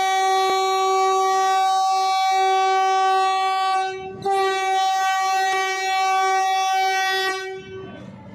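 Vande Bharat Express train's horn sounding two long, steady blasts, with a short break about four seconds in.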